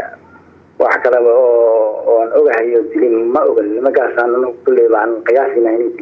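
Speech only: a man talking in Somali, the sound thin and muffled as over a phone line, after a short pause at the start.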